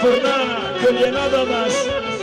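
Live Greek folk band music: a clarinet plays a wavering, heavily ornamented melody over the band's backing.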